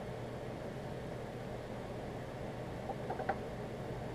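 Quiet room tone with a steady low hum, likely air conditioning. A little after three seconds in there are a few faint clicks as a mineral specimen is set down among other rocks on a wooden table.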